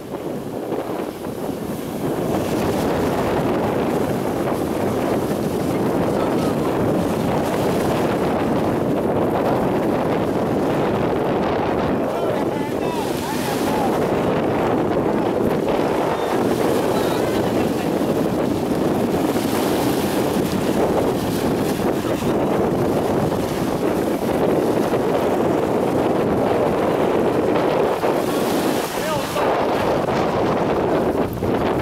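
Steady wind noise on the microphone over small waves washing in at the water's edge, with the engines of jet skis towing inflatable rides offshore.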